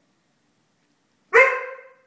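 Siberian husky giving one loud bark about a second and a quarter in, its tone fading out over half a second.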